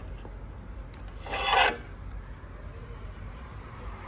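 A brief rubbing scrape, about half a second long and a little over a second in, of a hand handling the finned casing of the Road Glide's factory Boom Audio amplifier under the fairing bracket, over a low steady hum.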